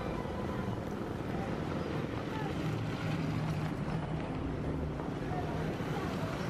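Street traffic: a steady hum of motorbike and car engines passing on the road.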